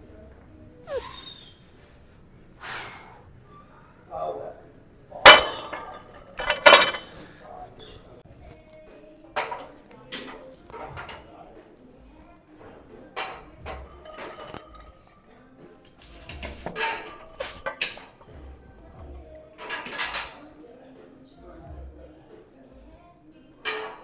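Steel barbell and iron weight plates clanking in a squat rack as plates are loaded onto the bar, with two loud clanks about five and seven seconds in and lighter metal knocks scattered after.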